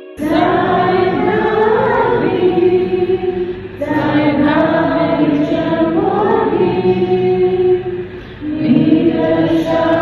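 A group of voices singing together, in phrases with short breaks about four and eight seconds in.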